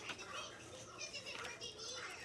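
Faint, high child voices in the background, with no clear words.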